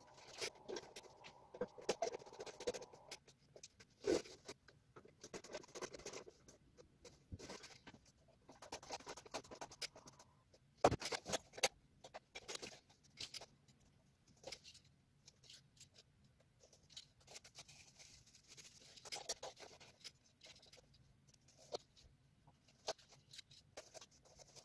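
Faint handling noises from working on a gravity boot by hand: irregular small clicks, taps and rustles of plastic and metal parts, with a louder knock about four seconds in and another about eleven seconds in.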